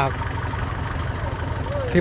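A diesel farm tractor's engine idling steadily: an even, low, pulsing rumble.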